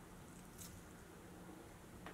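Near silence: room tone, with one faint click a little after the start.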